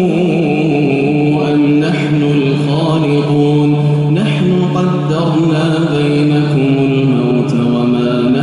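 An imam's solo Quran recitation in the melodic tajweed style: one man's voice drawing out long notes with slight ornamental turns in pitch.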